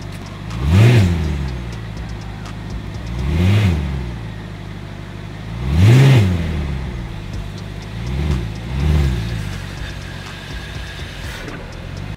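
2008 BMW 550i's V8 idling and blipped five times, each rev rising and falling back to idle, the last two in quick succession. The gearbox is in drive, yet the revs do not turn the wheels: the automatic transmission is not putting power through.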